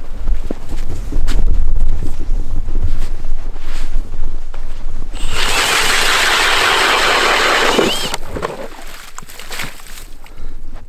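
Wind rumbling on the microphone, then about three seconds in from the middle a cordless drill driving an ice auger bores steadily through lake ice about three inches thick, cutting off shortly before the end.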